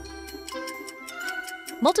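Clock-style ticking sound effect for a quiz countdown timer, over light background music; a voice comes in near the end.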